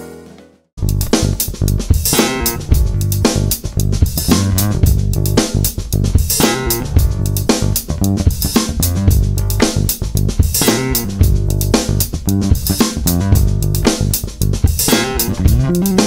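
Wyn Basses five-string electric bass played fingerstyle through an amp, a busy bass line over drums, starting about a second in after a piano piece fades out and a short gap.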